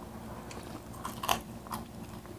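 Close-miked eating sounds: people chewing food, with a few short sharp mouth clicks, the loudest about a second and a quarter in.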